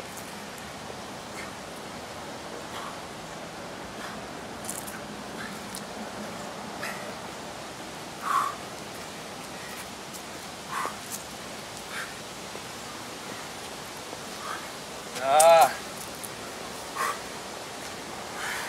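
Steady outdoor background hiss, broken by a few short voice sounds; the loudest, about fifteen seconds in, is a brief strained vocal sound.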